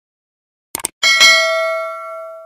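Two quick clicks, then a bell struck once about a second in that rings on and fades slowly: the click-and-bell sound effect of a subscribe-button animation.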